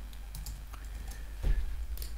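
Typing on a computer keyboard: a few scattered keystrokes as an IP address is entered, with one heavier key knock about one and a half seconds in.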